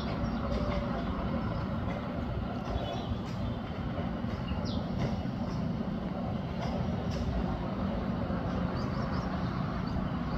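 Steady low rumble of outdoor background noise, with a few faint, brief high bird chirps scattered through it.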